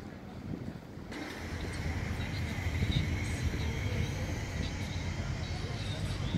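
Low, steady outdoor rumble of a quiet building site, stepping up about a second in, with a faint steady high whine and a few light ticks over it.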